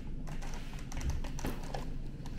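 Scattered light clicks and taps of a clear plastic egg carton being handled, with one sharper tap about one and a half seconds in.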